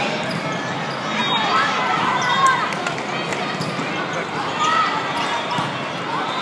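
Echoing hubbub of a busy indoor volleyball hall: many overlapping voices, with short sneaker squeaks on the court and a few sharp ball hits, the loudest about two and a half seconds in.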